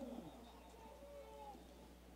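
Very faint, distant voices of people shouting, over a low steady hum.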